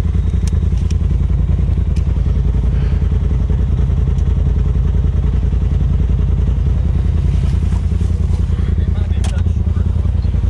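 Polaris RZR side-by-side engine idling steadily while the machine stands still, with a few light clicks.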